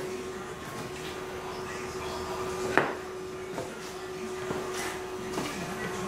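Steady low hum with faint background noise in a small room, broken by one sharp click a little before three seconds in and a few fainter knocks later.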